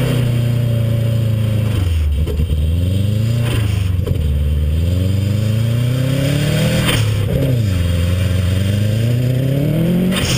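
Subaru WRX's turbocharged flat-four engine revving hard under load, the revs climbing, dropping sharply and climbing again about three times as the car is thrown around on snow. There are a few short knocks near the points where the revs fall.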